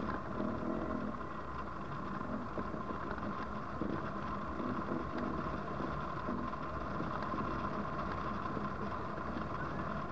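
Steady rushing airflow over the microphone of a camera mounted on a hang glider in flight, with a thin steady tone running underneath.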